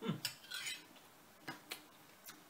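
A metal spoon scraping across a plate while scooping up food, followed by two short, light clinks about a second and a half in.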